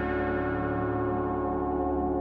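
Background ambient music of sustained, ringing bell-like tones, steady throughout.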